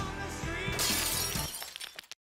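Film soundtrack music with a sudden crash about three-quarters of a second in, a bright, noisy burst that fades within about a second. The sound then drops away near the end.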